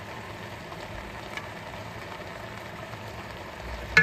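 Pan of raw vegetables, meat and a little water heating on an induction hob, sizzling faintly and steadily. A sharp click near the end.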